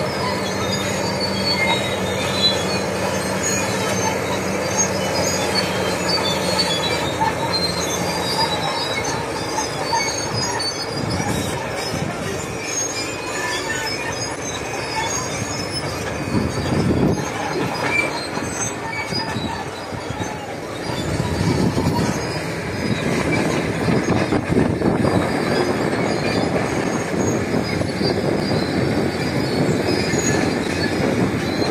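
A wheel loader's diesel engine runs with a steady hum for the first several seconds over a constant rushing noise. Later comes the rushing noise of a wildfire burning through scrub and trees, with crackling, growing louder over the last third.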